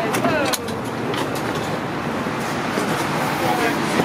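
Voices of people in a crowd over steady street and vehicle noise, with a few sharp clicks about half a second in.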